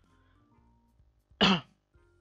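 A man clears his throat once, a short loud rasp about one and a half seconds in, over faint background music.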